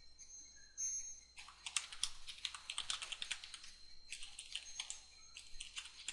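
Typing on a computer keyboard: rapid keystrokes in two runs, starting about a second and a half in, with a short pause around the four-second mark.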